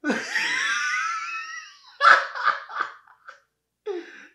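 A man laughing hard. First comes a long, high, rising squeal of laughter, then a run of short bursts of laughter about two seconds in.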